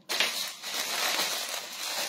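Clear plastic packaging bags crinkling and rustling as they are handled and pressed on a table. The noise starts suddenly and keeps going with a dense crackle.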